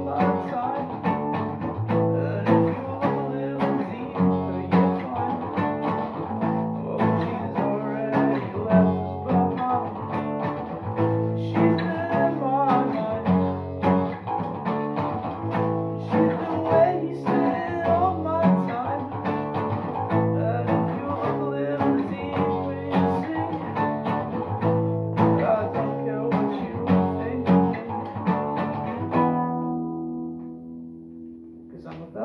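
Acoustic guitar and electric bass guitar playing a song together, with a bass line under picked and strummed guitar chords. Just before the end the playing stops and the last chord rings out.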